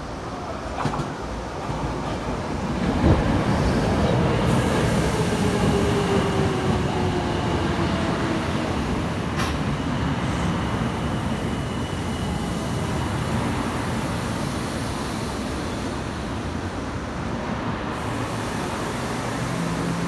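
Tokyo Metro 02 series subway train pulling into the station past the platform end and slowing. Wheels rumble on the rails, with a falling electric whine as it brakes and a few sharp clicks over rail joints. It is loudest a few seconds in, as the train draws alongside.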